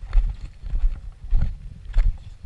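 Footsteps of a walker on a rocky, gravelly trail, about one and a half steps a second, each step a dull thump with a light crunch of stones.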